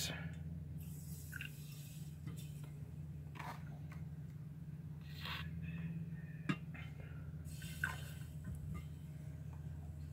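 Faint drips and squirts of bleach from a pipette into a beaker of acid solution, in a few separate short bursts, with one sharp click about six and a half seconds in. A steady low hum runs underneath.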